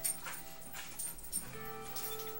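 Two pit bull dogs play-fighting, giving short dog noises and scuffling, over music from a television commercial. A couple of short sharp sounds stand out near the start and about one and a half seconds in.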